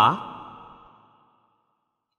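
A man's voice drawing out the last word of a sentence, fading away over about a second, then silence.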